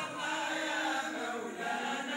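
A group of men chanting Sufi samaa and madih, devotional praise of the Prophet, in unison without instruments, several voices blending on held, gliding notes.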